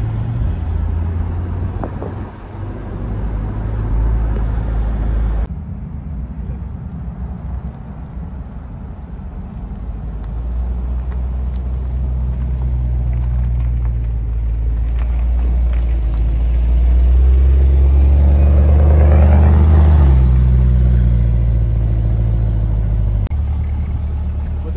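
Chevrolet Corvette Stingray (C8) 6.2-litre V8 at low speed: first heard from inside the open-top cabin while driving, then, after a cut a few seconds in, from outside as the car comes up and rolls past close by. The engine grows louder to a peak near the end and then eases off.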